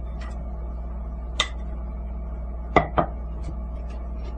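A metal spoon clinks against a mesh sieve and bowl while lumpy mustard sauce is pressed through the strainer. There is one sharp clink a little over a second in, then two quick ones close together near the end, over a steady low hum.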